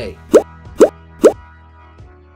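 Three quick cartoon 'bloop' pop sound effects about half a second apart, each rising sharply in pitch, over soft background music.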